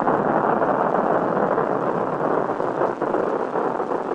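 Rocket engine firing: a loud, steady, dense noise with no clear pitch.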